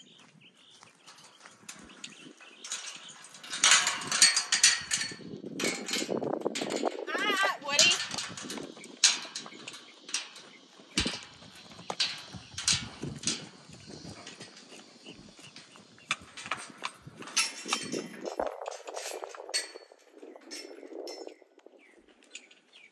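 Metal pipe-panel gate being unlatched and swung open: a run of sharp clanks, knocks and rattles, busiest from about three seconds in to the middle. A horse's hooves go by on dirt, and a wavering, voice-like call sounds about seven seconds in.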